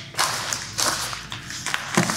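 A folded camera tripod being handled: rustling and scattered clicks from its legs and fittings, then a knock near the end as it is set down on the wooden table.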